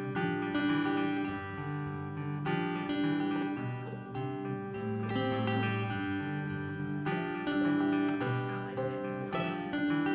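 Live acoustic folk instrumental intro: a mandolin and two acoustic guitars playing a steady, flowing melody together, with no singing yet.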